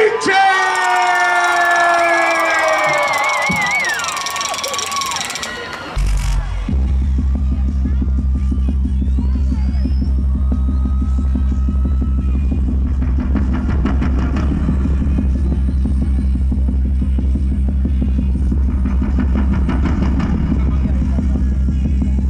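A long drawn-out announcer's shout rings through the concert PA for the first few seconds, with the crowd cheering. From about six seconds in, a steady, loud low drone comes from the stage sound system as the band's intro begins.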